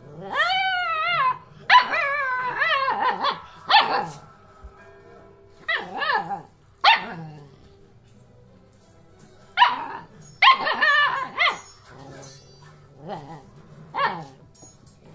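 Two-month-old Alaskan Malamute puppy 'talking': a string of high, pitch-bending woo-woo calls and yips in several bouts. The first is a long arching howl-like call, and the others are shorter, with pauses between the bouts.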